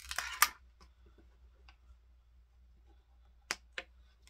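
Small plastic action-figure parts being handled: a brief plastic rustle at the start, then quiet, then two sharp plastic clicks near the end, about a third of a second apart, as a swappable hand is worked onto the figure.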